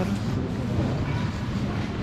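Steady low hum and rumble of supermarket background noise beside the refrigerated display cases, with faint voices about a second in.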